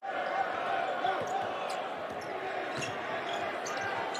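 A basketball dribbled on the hardwood court, with steady crowd noise of a large arena behind it. A few sharp ticks stand out about three seconds in.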